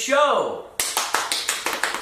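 A short falling vocal sound, then quick clicking taps, about seven a second, typical of typing on a computer keyboard.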